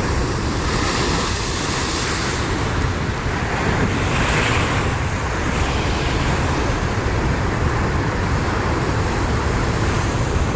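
Heavy surf crashing on a lava-rock shore: a continuous low rumble and wash of breaking white water, with surges of hiss as waves burst into spray, loudest in the first two seconds and again about four to five seconds in. Wind buffets the microphone.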